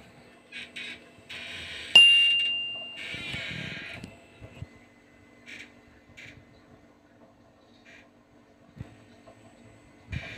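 Rustling handling noises, then a sharp clink about two seconds in that rings out as one clear tone and fades over about a second. A few faint ticks and a soft knock follow.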